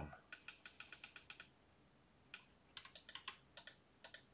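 Faint clicking of computer keyboard keys being tapped: a quick run of about a dozen clicks, a pause of about a second, then a second, looser run of clicks.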